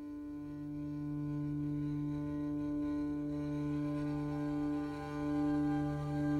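Background music opening with long held low notes that swell in over the first seconds.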